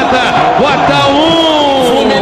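Radio football commentary: excited male voices overlapping, with one long drawn-out call falling in pitch from about a second in.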